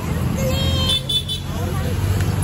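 Steady rumble of road traffic passing, with people's voices around it.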